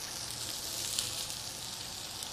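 Shallots sautéing in brown butter in a hot pan: a steady sizzle with light crackling.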